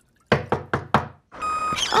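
Knocking on a wooden door, about four quick knocks. About a second and a half in, construction machinery noise begins, with a steady beeping tone.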